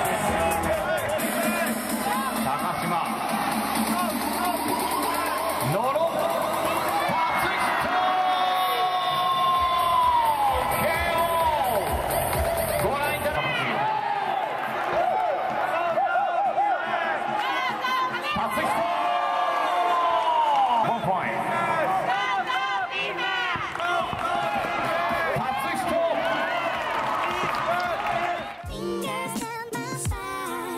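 Background music mixed with a crowd cheering and shouting.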